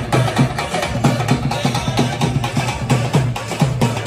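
Dhol drums beaten with sticks, several players together, in a steady driving rhythm of several strokes a second.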